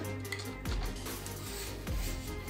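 Background music, with a couple of faint knocks.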